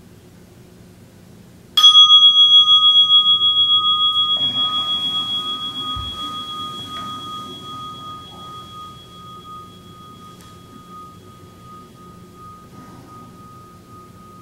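A meditation bell struck once, ringing with a clear tone that wobbles as it slowly fades over about ten seconds, marking the close of the sitting. Faint rustling and a soft low thump follow a few seconds after the strike.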